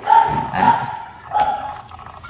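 The metal link bracelet of a Casio LTP1310 watch being handled: faint clinking and rubbing of the links, with a few small sharp clicks.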